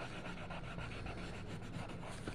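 Colored pencil shading on the paper of a coloring book: quick, rhythmic back-and-forth strokes, a rapid rasping scratch.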